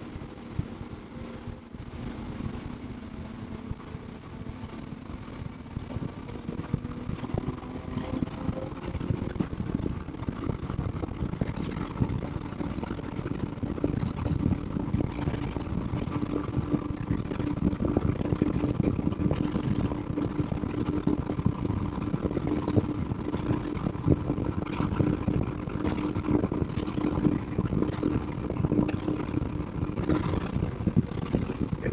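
Outboard engines on a 34 ft Hydra-Sports center-console boat running hard on a sea trial, pitch rising in the first several seconds as the boat speeds up and then holding steady at high speed. Over it is a constant rush of wind and water, with frequent short knocks.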